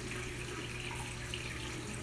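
Faint, steady rush and trickle of water circulating in a saltwater reef aquarium, with a low hum underneath.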